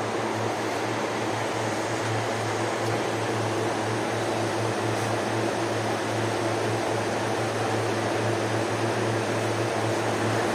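Electric motor of a carpet roller machine running steadily, a constant low hum with a noisy whir over it.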